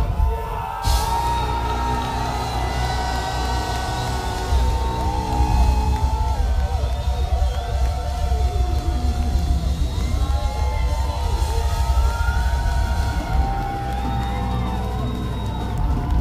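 Heavy metal band's amplified guitars and bass ringing out in long held notes after a last hit about a second in, as a song ends live, with a crowd cheering and whooping over it.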